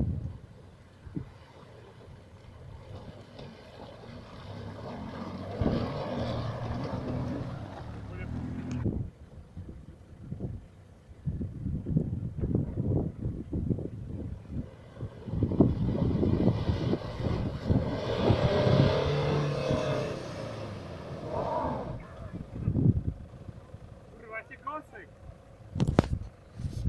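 Four-wheel-drive engines revving and labouring as the vehicles crawl through deep mud and standing water, the engine note rising and falling with the throttle. The engines are loudest in two swells, about a quarter of the way in and again from about two-thirds in, with tyres churning and splashing through the ruts.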